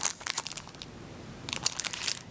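Clear plastic packaging of rubber cling stamp sets crinkling and crackling as it is handled. The crinkling comes in two spells, at the start and again from about a second and a half in, with a quieter gap between.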